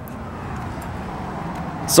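Road traffic: a passing motor vehicle's steady rushing noise, growing gradually louder.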